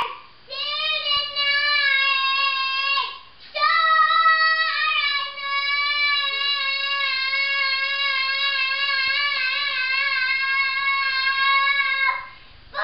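Young boy singing an improvised song in long held notes, without clear words: two short phrases, then one note held, slightly wavering, for about seven seconds.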